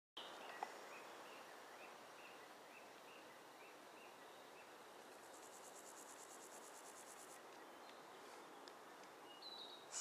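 Faint outdoor ambience with insects: a short chirp repeated about twice a second for the first four seconds, then a high, fast trill for about two seconds in the middle.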